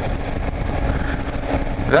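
Single-cylinder engine of a 2009 Kawasaki KLR 650 motorcycle running steadily at cruising speed, with wind and road noise.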